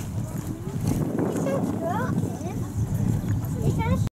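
Indistinct voices of people talking, over a steady low outdoor rumble.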